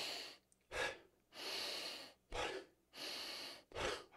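A man breathing close to a microphone in a slow in-breath, strong out-breath pattern: three long, slow breaths in through the nose, each followed by a short, forceful breath out.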